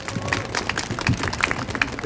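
Audience applauding: many overlapping handclaps.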